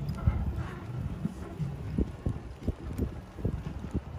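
Golf cart rolling along a bumpy sandy dirt track: a low rumble with irregular thumps and jolts as it goes over the ruts, and wind buffeting the microphone.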